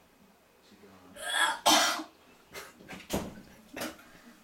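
A woman coughing and retching over a toilet bowl after heavy drinking: two loud, harsh coughs about a second in, then several shorter, fainter ones.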